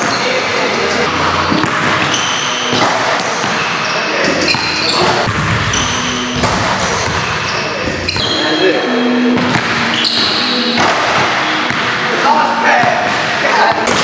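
Basketballs bouncing on a hardwood gym floor, echoing in a large hall, among voices and a laugh.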